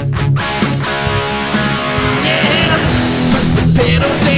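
Rock song playing an instrumental passage led by electric guitar over bass and drums, with no singing.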